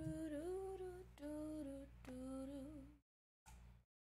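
A woman humming three short, held phrases of a tune, the pitch moving a little within each. The sound cuts off abruptly about three seconds in.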